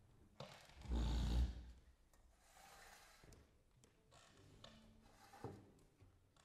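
A quiet pause in a concert hall: a short low thud with rustling about a second in, then faint shuffling and a few small clicks, the sounds of people and instruments settling.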